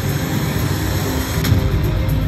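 Regal Riches video slot machine playing its reel-spin anticipation music while the last reel spins after two free-games symbols have landed, over a dense low casino din. A sharp click comes about one and a half seconds in.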